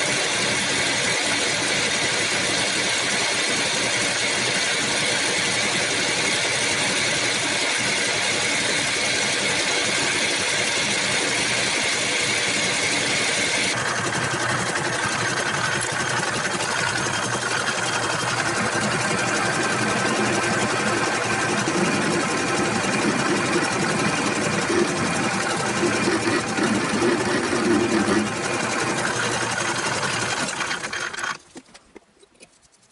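Metal lathe running steadily, its motor and headstock drive giving a constant hum with several steady tones while it turns a metal blank. About 14 seconds in the sound changes abruptly, and later a rougher, uneven cutting noise grows, loudest near the end.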